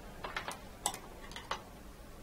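Light clicks and taps of a paintbrush being picked up and handled: about seven small, sharp ticks, unevenly spaced.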